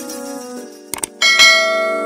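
Subscribe-button animation sound effect: two quick mouse clicks about a second in, then a bright bell chime that rings on and slowly fades, over sustained tones of background music.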